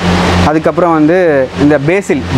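A man speaking over a steady low hum, with a short hiss just before his voice starts.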